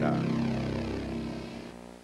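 A sustained synthesizer chord, the last note of a TV commercial's music bed, fading out steadily over about two seconds.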